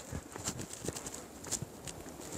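Faint, irregular footsteps, a few soft knocks about half a second apart, as a person walks away across grass.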